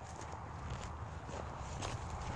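Faint footsteps on a dry dirt path.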